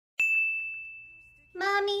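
A single high, bell-like ding sound effect that strikes just after the start and rings out, fading over about a second. A voice then says "Mommy" near the end.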